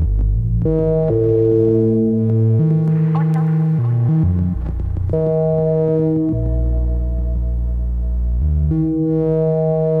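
Eurorack modular synthesizer playing a slow ambient patch: sustained tones over a deep bass, the notes shifting every second or two.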